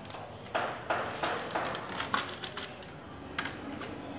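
Scissors snipping open a plastic powder sachet, the packet crinkling: several sharp, separate clicks and crackles.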